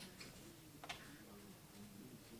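Near silence: quiet room tone with two faint short clicks, one just after the start and one about a second in.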